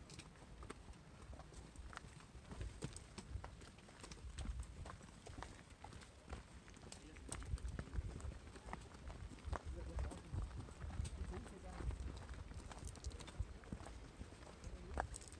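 Hikers' footsteps and trekking-pole tips tapping on a rocky mountain trail, a stream of irregular sharp clicks and crunches over a low rumble.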